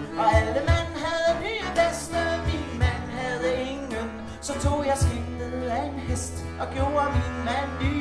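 A small folk band playing live: a woman sings a Danish verse into a microphone over accordion, a low reed instrument and sharp cajon strikes.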